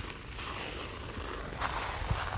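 Faint footsteps and rustling through leafy undergrowth, uneven with a few small clicks.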